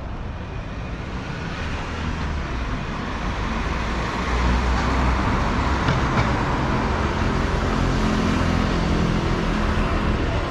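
Road traffic moving along the street as the lights turn green. It grows louder about four seconds in and stays up, with engine sound from motorcycles passing.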